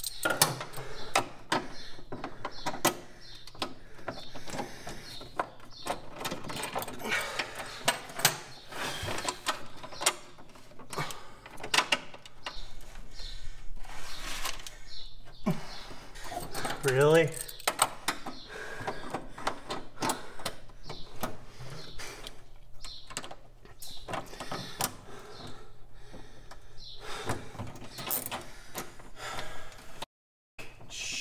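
Scattered clicks, knocks and rattles of hands and tools handling a heater box under a truck's dashboard while it is being fitted to the firewall, with a brief wavering pitched sound about 17 seconds in.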